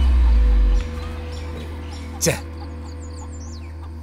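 Film score with a loud, sustained low drone that eases off after about a second. A short sharp sound comes about halfway through, and faint high bird chirps follow near the end.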